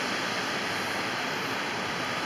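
Steady, even outdoor background noise with no distinct sound events, like the hum of distant street traffic.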